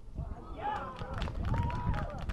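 Footballers shouting on the pitch as a set-piece attack ends at the goal, with raised, drawn-out calls over a low outdoor rumble.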